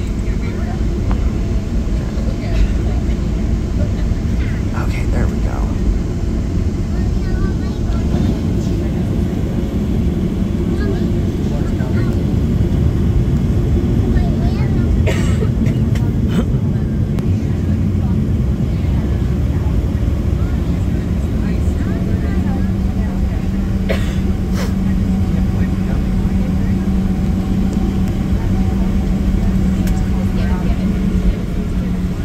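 Boeing 737-700 cabin while taxiing: a steady low rumble of the CFM56-7B engines at taxi power and the airframe rolling over the taxiway, heard through the cabin wall. A steady low hum joins about two-thirds of the way in.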